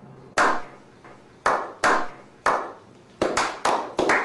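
A slow clap of sharp single hand claps that start about a second apart and come quicker and quicker, each with a short echo.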